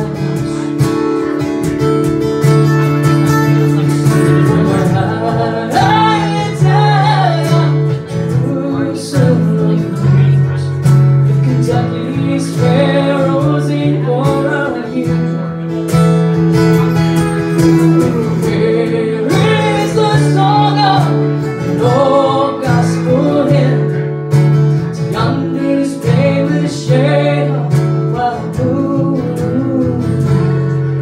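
Live acoustic guitar strumming chords under a lap steel guitar playing a sliding, gliding melody.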